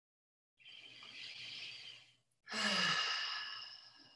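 A woman takes a slow, soft breath in, then lets it out in a louder audible sigh that opens with a brief falling hum: a deep relaxation breath.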